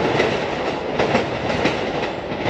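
New York City subway train running on the tracks: a steady rumble of wheels on rail with several sharp clacks as wheels strike the rail joints.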